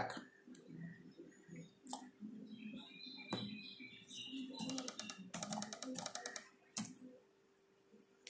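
Faint computer keyboard typing and mouse clicks: a few single clicks, then a quick run of keystrokes about four and a half seconds in, over a faint steady hum.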